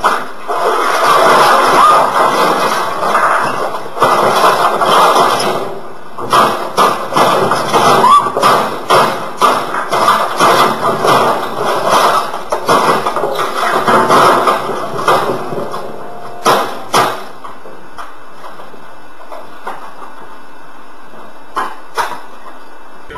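Loud clattering and crashing as a large office printer is shoved about and toppled: a long, irregular run of knocks and bangs that dies away about sixteen seconds in.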